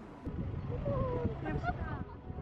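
People's voices talking over a low rumble that starts a moment in.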